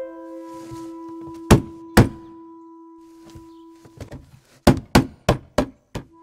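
Wooden thuds from a wooden lattice window being pushed and shaken by hand. There are two loud thuds half a second apart about a second and a half in, then a quicker run of four near the end, over a single held note of background music.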